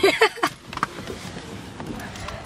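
A woman's laugh, ending about half a second in, then a low steady rumble with a few small clicks.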